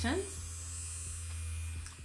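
Silicone electric facial cleansing brush running in the hand: its vibration motor gives a steady low buzz, which cuts off near the end.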